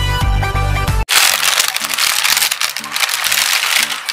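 Intro music with a steady beat cuts off abruptly about a second in. It gives way to a thin plastic bag being crinkled and rustled by hands, a dense crackling that runs on with faint background music under it.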